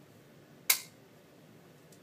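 Plastic iExaminer adapter clicking into place on a Welch Allyn PanOptic ophthalmoscope: one sharp snap-fit click about two-thirds of a second in.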